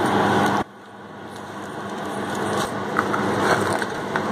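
A steady machine hum with rushing air noise, which cuts out suddenly about half a second in and slowly swells back. Over it come a few faint crackles as a crisp wheat roti is torn into pieces by hand on a steel plate.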